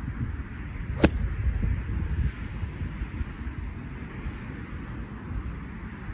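A golf iron strikes a ball out of long rough: one sharp click about a second in. Steady wind rumble on the microphone fills the rest.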